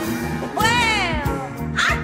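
AI-generated pop-rock song with a backing band and a wordless vocal ad-lib that swoops up and then down in pitch, starting about half a second in, followed by a shorter vocal cry near the end.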